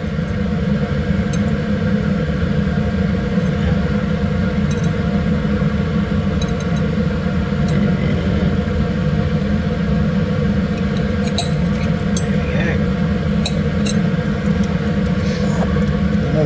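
Laminar flow cabinet blower running with a steady drone, with a few light clicks of metal forceps and scalpel against the plate in the second half.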